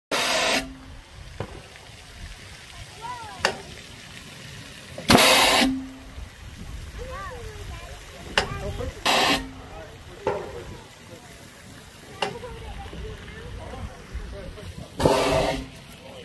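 Apple cannon firing four times, each shot a sharp half-second blast of air, three of them trailed by a brief low hum.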